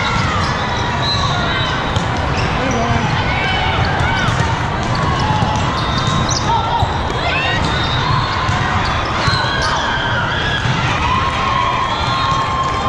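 Volleyball play in a large, echoing hall with many courts: a continuous hubbub of players' and spectators' voices and calls, with scattered sharp thuds of balls being hit and bouncing.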